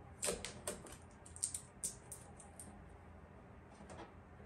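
Irregular small clicks and crackles from hands working tape off the plastic back panel of a Vitamix FoodCycler FC-50 food recycler. They are bunched in the first two and a half seconds, then stop.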